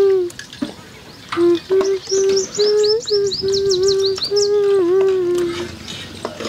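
Birds chirping, with a quick run of short, high, falling chirps in the middle, over a string of steady low whistle-like notes that stops a little before the end.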